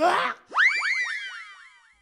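Comic 'boing' sound effect: a quick run of springy pitch sweeps, each rising sharply and then sliding down, fading away over about a second and a half. It comes right after a short harsh burst at the very start.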